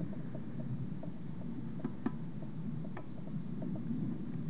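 A steady low background hum with a few faint light clicks, as a brass union and copper washer are set down onto an aluminium pressure-cooker lid.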